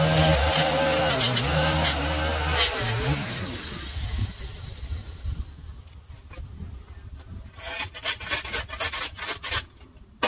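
A gas stick edger's engine running at low speed, shut off about three seconds in and winding down. Near the end, a flat shovel scrapes in quick strokes along the concrete sidewalk edge.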